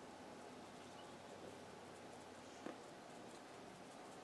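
Near silence: room tone, with one faint tick about two and a half seconds in.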